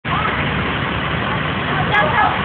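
Street traffic noise: vehicle engines running steadily, with indistinct voices in the background.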